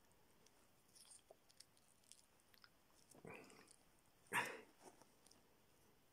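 Quiet handling of plastic clip-on ferrite cores being fitted onto a mains cable: faint scattered clicks, then two short rustles, the louder a little over four seconds in.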